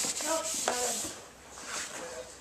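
White fiber pad (Fibertex) scrubbed back and forth across a Nordic ski's base, a hissy rubbing that trails off about a second in.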